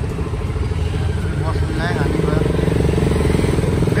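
Motorcycle engine running steadily while riding through street traffic.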